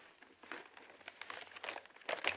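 Faint rustling and crinkling of paper being handled, a string of short crackles.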